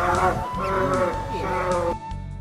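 Two brown bears wrestling, giving drawn-out calls that bend up and down in pitch, over flute music; the calls cut off just before the end.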